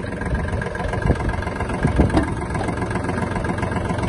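Kubota L1-185 mini tractor's diesel engine running steadily while the tractor stands.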